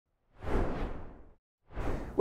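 A whoosh sound effect: a rush of noise that swells quickly and fades away over about a second, followed near the end by a shorter rise of noise.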